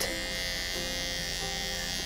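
Cordless electric animal clippers running with a steady buzz, worked against the hair of a horse's ear around the area cleared of warts.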